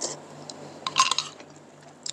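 Metal spoon dipping into rice soaked in iced water in a ceramic bowl: small watery splashes and light clinks, the loudest cluster about a second in.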